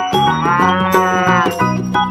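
A cow mooing once: one long call that rises and falls in pitch, over cheerful background music.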